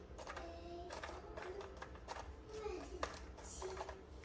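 Faint, high-pitched voice of a young child, short wavering phrases, with several light clicks and taps over a low steady room hum.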